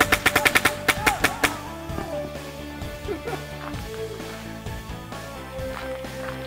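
A Planet Eclipse Etek 4 electronic paintball marker fires a rapid string of shots, about ten a second, for the first second and a half. Background music plays under the shots and carries on after them.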